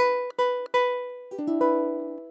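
A Córdoba ukulele sounding an E minor 7 chord: three separate strikes of the strings in the first second, each ringing briefly before being cut short, then a quicker run of strums from about a second and a half in.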